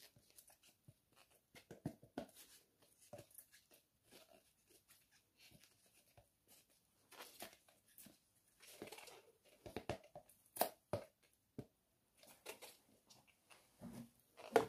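Faint, scattered clicks and rustles of nitrile-gloved hands handling a plastic measuring cup, with a few louder sharp ticks about ten seconds in.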